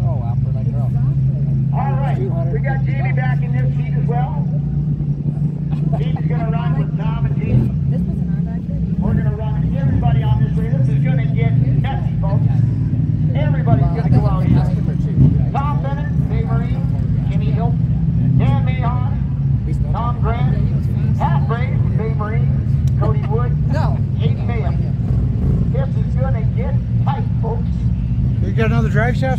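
Several side-by-side UTV engines running at a steady low idle, one constant drone with no revving, under people talking nearby.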